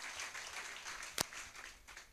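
A congregation applauding with hand claps, fading away, with one sharper single clap about a second in.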